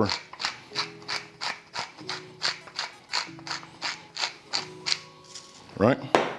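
Tall wooden pepper mill being twisted to grind black pepper, giving a regular run of short grinding clicks, about four a second.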